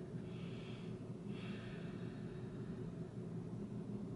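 Soft breathing, two quiet breaths in the first two seconds, over a steady low room hum.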